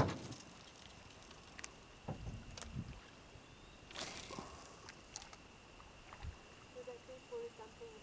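Quiet scene with a few light knocks and clicks and a short rush of noise about four seconds in, over a faint steady high-pitched hum.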